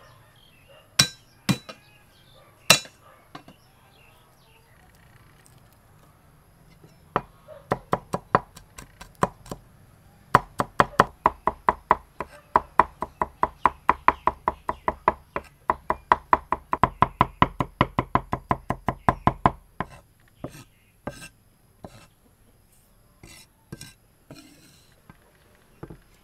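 Steel cleaver chopping garlic on a thick round wooden chopping board. A few single knocks come first, then a fast, even run of chops, about four a second, lasting some ten seconds, before it slows to scattered taps.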